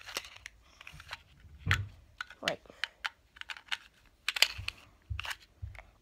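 Irregular small clicks and taps of hands handling a green plastic coin magic gadget with a coin inside it, as it is turned around and worked.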